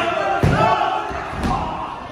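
A wrestler's body landing hard on the wrestling ring's canvas with a heavy thud about half a second in, and a lighter thud about a second later, over people shouting.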